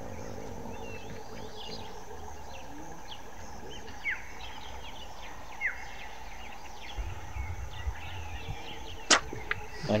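Steady outdoor bush ambience with a few short bird chirps. About nine seconds in comes a single sharp snap from the bow shot at the hippo.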